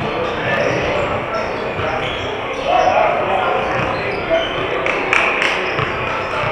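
Basketballs bouncing on a hardwood gym floor, with a few sharp bounces close together near the end, over the echoing chatter of a large hall.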